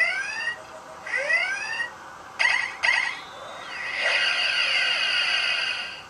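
Electronic sound effects from a Star Trek Enterprise-D toy's small speaker: the red alert klaxon whoops twice, rising in pitch each time. It is followed by two short electronic bursts and a long, steady electronic effect lasting about two seconds.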